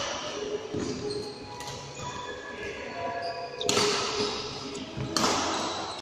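Badminton hall sounds: shoes squeaking on the court floor, footfalls and racket hits on the shuttle, echoing in a large hall, with faint voices. There are two louder sharp bursts, about four and five seconds in.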